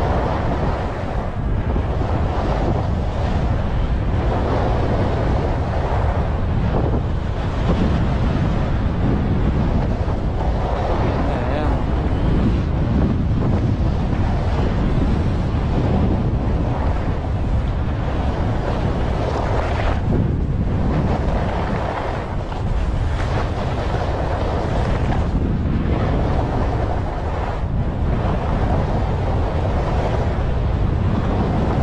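Wind rushing over the microphone, with skis scraping across packed, groomed snow during a downhill run. The noise surges and eases every few seconds, dipping briefly about two-thirds of the way through.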